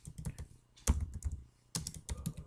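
Computer keyboard keys being pressed: a few separate keystrokes, the loudest about a second in, then a quick cluster of them near the end.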